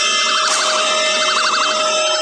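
Cartoon hypnosis sound effect: loud, layered electronic tones warbling quickly up and down like a siren, with a steady tone joining about a quarter second in.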